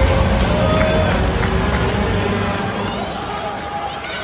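Arena PA music fading out about two seconds in, at the puck drop that starts play, leaving crowd voices and shouts echoing around the hockey rink.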